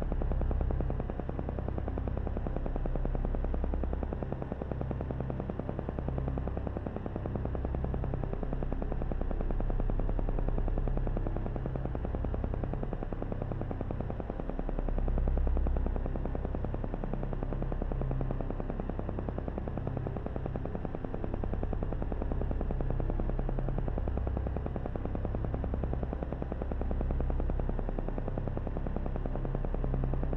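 Low, steady ambient background music: a deep synthesizer drone that slowly swells and fades.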